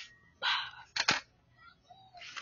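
Handling noise from a plastic BB pistol: a brief rustle, then two quick sharp clicks about a second in.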